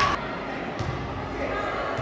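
Indoor futsal hall ambience: voices of players and spectators calling out in an echoing hall, with a sharp knock of the ball being struck at the start and a fainter one just under a second in.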